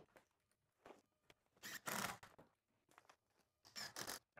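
A few brief rustles and scrapes of handling, loudest about two seconds in: a 2x4 block and paper-faced fibreglass insulation being shifted against wooden wall studs.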